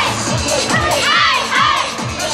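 A troupe of yosakoi dancers shouting short calls together, several in quick succession, over loud dance music with a steady beat.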